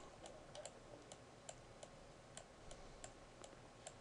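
Faint, irregular ticks of a stylus tapping and sliding on a pen tablet while handwriting, about three a second, over near-silent room tone.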